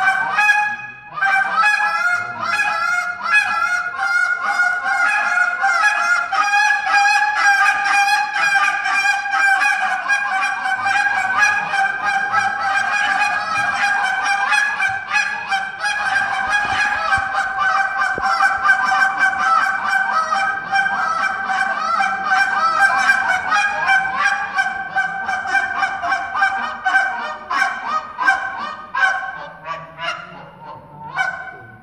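Field Proven goose call blown in a Canada goose imitation: a fast, nearly unbroken run of short honks and clucks, several a second, easing off near the end.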